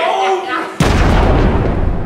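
A deep boom sound effect hits suddenly just under a second in and rumbles away slowly, marking a transition.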